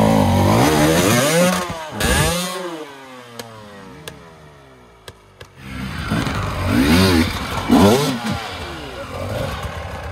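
Enduro dirt bike engine revving in bursts, its pitch rising and falling. Around the third second it drops away to a quieter, falling note with a few sharp clicks, then revs hard again from about the sixth second.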